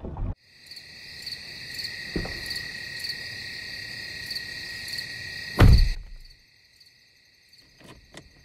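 Crickets chirping steadily, with a knock about two seconds in and a loud heavy thump just before six seconds, a car door being shut. After the thump the crickets sound much fainter.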